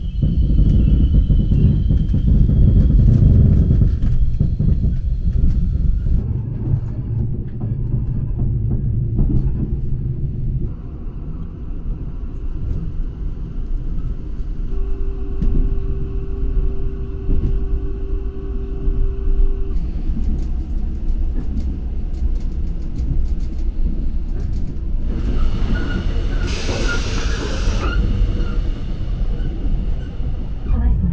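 Steady low rumble and clatter of a Korail Mugunghwa passenger train running, heard from inside the carriage; it is heaviest in the first few seconds. A loud hissing rush comes in briefly near the end.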